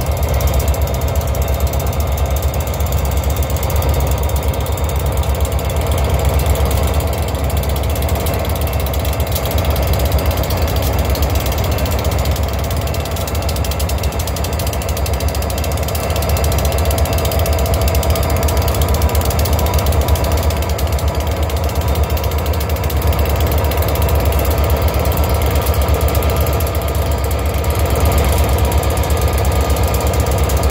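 Canadian Pacific diesel-electric locomotives rolling slowly past close by: a steady low engine drone under a fast, even mechanical rattle.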